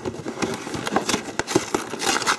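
Cardboard gift box being handled and pried open by rubber-gloved hands: a run of irregular small taps, scrapes and crackles.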